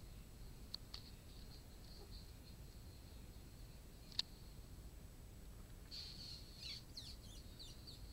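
Faint, high-pitched squeaks and chirps from young kittens, a cluster of short ones in the last two seconds, over quiet room tone. A sharp tick comes about four seconds in.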